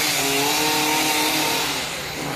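A steady running motor: a strong hiss with a few wavering hum tones beneath it, holding level throughout.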